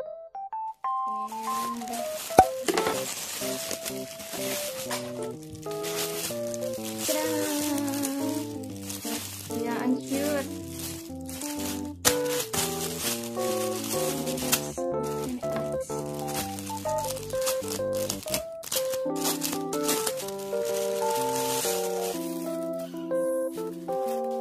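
Plastic packaging crinkling and rustling as a poly courier mailer is cut open and a plastic-wrapped bedsheet set is pulled out and handled, over background piano music.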